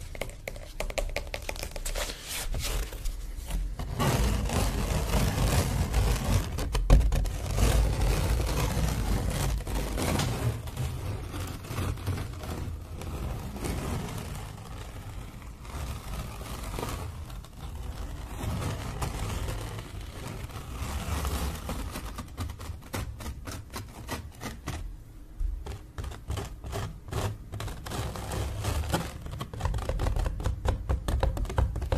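Fingertips tapping rapidly and without pause on a stretched painting canvas, a dense patter of light clicks over a soft drum-like thud from the taut fabric, recorded very close to the microphone.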